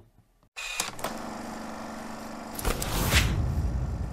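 Logo-transition sound effect: after a brief silence, a steady humming drone that swells into a loud whoosh with a deep boom about three seconds in, then starts to fade.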